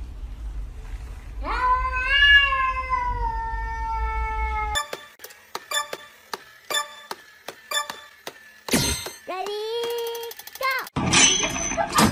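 Domestic cats meowing. One long drawn-out meow comes about a second and a half in, rising and then slowly falling in pitch. Sharp clicks follow, then a second meow near the end that glides up and is held.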